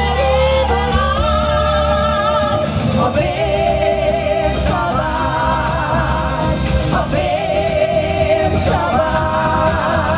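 Live vocal group singing through a PA, female and male voices together on long held notes over amplified backing music.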